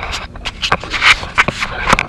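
Rustling and scraping with a run of short knocks and clicks: handling noise as the camera is moved about under the vehicle while a person shifts on the concrete floor.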